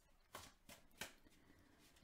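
Tarot cards being handled and shuffled by hand: three faint, short papery snaps in the first second or so.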